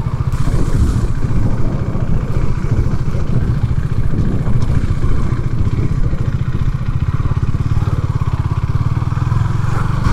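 KTM 390 Duke's single-cylinder engine running at low revs with a steady, even low pulse as the motorcycle slows to a crawl.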